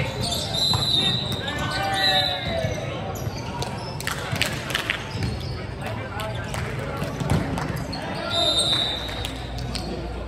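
Indoor volleyball rally in a large, echoing sports hall: players shouting and calling, short high sneaker squeaks on the hardwood court, and sharp slaps of ball hits or hand claps around four to five seconds in.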